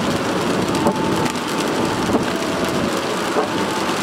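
Steady rain pattering on a moving car's roof and windows, heard from inside the cabin, with road noise beneath.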